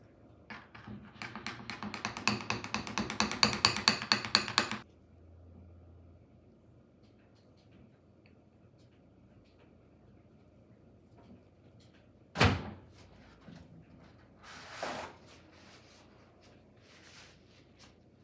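A spoon stirring melted chocolate fast in a bowl, clicking and scraping against the bowl several times a second for about four seconds. Later comes one sharp thunk, the loudest sound, and a little after it a softer rustle.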